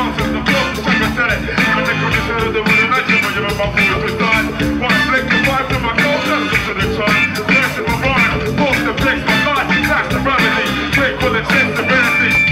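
A live hip-hop band plays a song with a steady, busy beat on the drum kit, bass and guitar, with horns.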